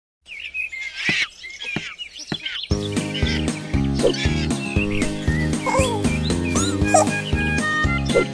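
Birds chirping with a few light knocks, then about two and a half seconds in upbeat instrumental children's music with a steady beat starts, the chirping carrying on over it.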